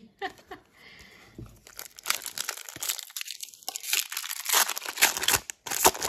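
Foil wrapper of a Pokémon Brilliant Stars booster pack crinkling and tearing as it is ripped open by hand. A few soft clicks of cards being handled come first, then from about two seconds in a dense crackle that grows louder toward the end.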